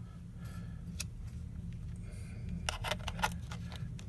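Light metallic clicks of a chipped M42-to-Nikon lens adapter being handled and fitted onto a Nikon camera's lens mount. There is a single click about a second in and a short cluster of clicks near the end, over a low steady hum.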